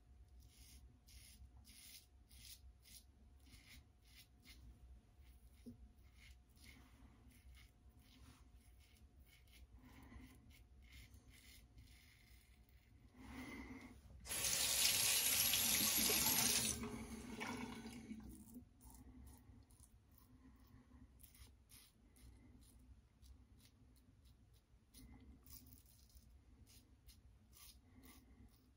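Leaf Shave Thorn safety razor cutting through lathered stubble in short scraping strokes, a couple a second. About 14 seconds in, a sink tap runs for about two and a half seconds to rinse the razor, then the strokes resume.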